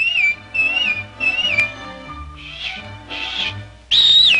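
Cartoon whistling over soft orchestral music: three short warbling whistled notes in quick succession, then two breathy puffs of air, a failed attempt to whistle. A louder falling whistle begins at the very end.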